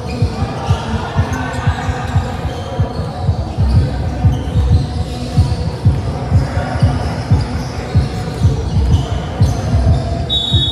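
Basketballs bouncing on a gym floor in quick, irregular thumps, with voices in the hall.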